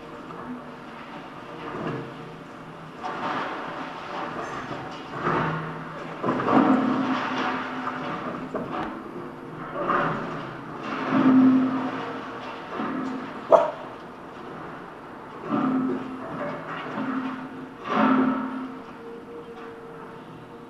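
Demolition excavator working against a concrete wall: the engine and hydraulics swell in repeated surges under load, with the crunch of breaking concrete. A single sharp crack comes a little past the middle.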